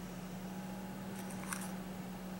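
Quiet room tone with a steady low hum, and a faint light tap and rustle about one and a half seconds in as a foam cup of potting mix is set down on a plastic seed tray.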